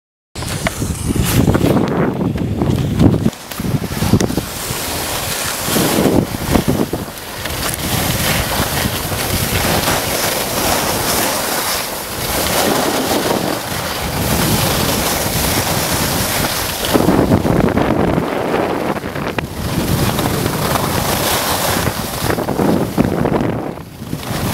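Wind buffeting the microphone of a camera carried by a moving skier: a loud, gusting rush with low rumbling surges that starts about half a second in, mixed with the hiss of skis running over snow.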